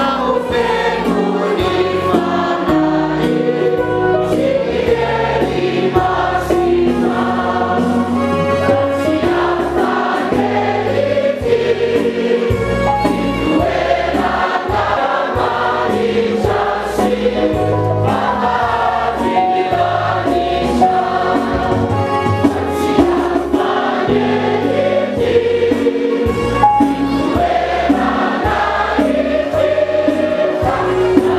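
A church congregation of men, women and children singing a Malagasy hymn together in many voices. Sustained low notes that change every second or two run beneath, typical of an electronic keyboard accompaniment.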